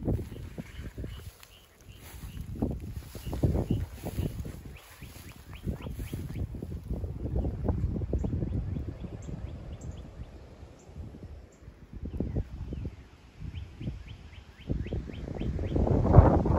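Small toads calling from a shallow pond, faint trains of rapid pulses that come and go, over wind rumbling on the microphone.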